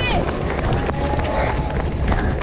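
Running footsteps on asphalt as the phone's holder jogs, with heavy wind and handling rumble on the microphone. Children's voices call out around the runner, one short falling shout right at the start.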